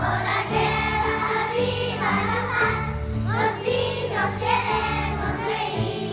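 A children's choir singing a song, accompanied by piano and double bass playing low sustained notes beneath the voices.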